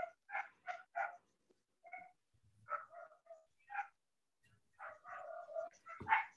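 A dog barking faintly in quick series of short barks, in three bunches with gaps between.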